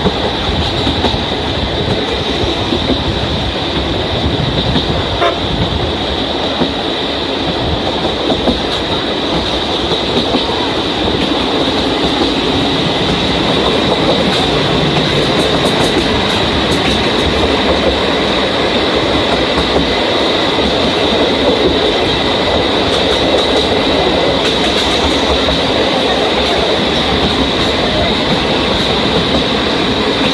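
Steady rumble and clickety-clack of a train running at speed, heard through an open coach window, with an E6 series Shinkansen running alongside on the next track; the noise grows a little louder about halfway through as the Shinkansen's cars draw level.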